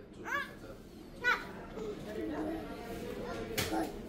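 A toddler's two short, high-pitched squeals, one just after the start and one about a second later, over a low murmur of distant voices. A sharp knock comes near the end.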